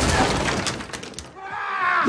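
A crash of bodies hitting the floor with things breaking and debris clattering, dying away after about a second and a half. A pained vocal groan starts near the end.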